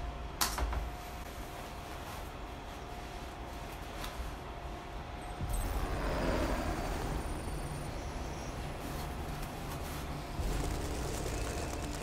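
Opening sound design of a film trailer: a steady low rumble, with a whoosh-like swell about six seconds in. A single sharp click sounds just after the start.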